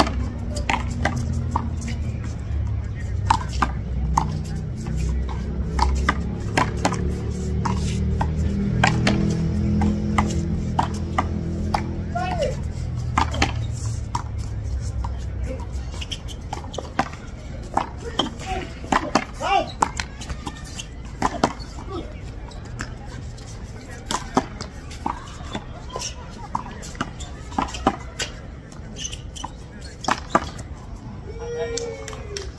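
A small rubber handball slapped by bare hands and smacking off a concrete wall during one-wall handball rallies: a run of sharp, irregularly spaced smacks. Music with low bass notes plays underneath for about the first half.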